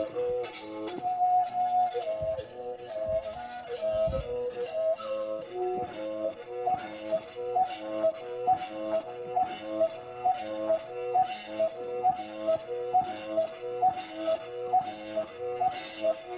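Umrhubhe, a Xhosa mouth bow, is played by rubbing a thin stick across its string while the player's mouth acts as the resonator, picking out a melody of stepping overtones. Partway through, the stick strokes settle into an even pulse of about two a second.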